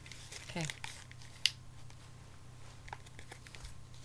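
A house key picking at and cutting into the wrapping of a mail package: faint scattered scrapes and ticks, with one sharp click about one and a half seconds in.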